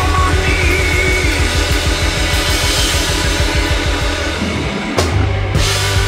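A rock band playing live at full volume: electric guitar, drum kit and organ over a fast, driving beat. About five seconds in the low end drops away for a moment, then a sharp drum hit brings the full band back in.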